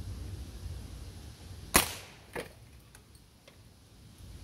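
Daisy Powerline 2003 CO2 pellet pistol firing one shot: a sharp pop a little under two seconds in, then a fainter second crack about half a second later and a couple of light ticks.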